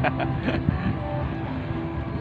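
Small wooden boat's engine running with a steady low rumble, under faint voices of the people aboard.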